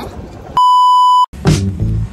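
A single steady bleep tone edited into the soundtrack, lasting under a second, with all other sound cut out beneath it. Background music with a steady beat plays on either side of it.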